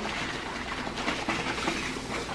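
Water sloshing inside a small plastic bottle as it is shaken, a run of quick sloshes and splashes.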